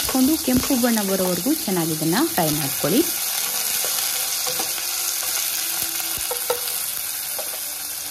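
Chopped onions sizzling steadily in hot fat with cumin seeds in a pot, stirred with a wooden spatula, with a few light taps of the spatula.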